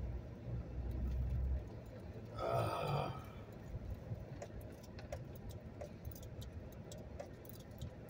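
Low rumble of a vehicle creeping along, heard from inside the cabin. About two and a half seconds in comes a short, rough burp from the driver, then only quiet cabin noise with a few faint ticks.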